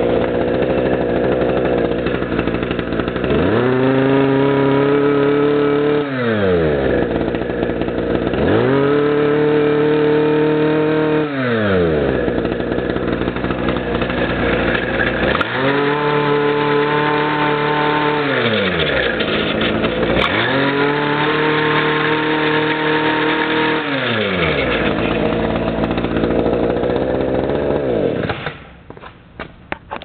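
Kioritz SRE260 shoulder-slung brush cutter's small two-stroke engine idling, then revved up with the throttle four times, each time held high for two to three seconds before falling back to idle. The engine is shut off near the end.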